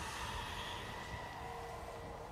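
Quiet, steady ambient drone from the TV episode's soundtrack, with a few faint held tones; a low tone joins about halfway through.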